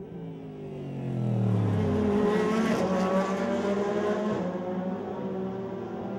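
Pontiac GTO.R race car's V8 engine running past at speed. The engine note drops over the first two seconds as the car closes in, is loudest through the middle, then holds a steadier pitch as the car goes by.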